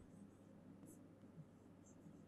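Faint scratches and taps of a stylus writing a word on an interactive display screen, over near-silent room tone.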